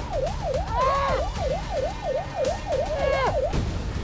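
Police car siren on its fast yelp setting, sweeping up and down about four times a second, cutting off about three and a half seconds in.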